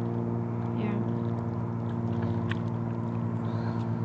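A steady low machine hum with even overtones, unchanging throughout, with a few faint clicks over it.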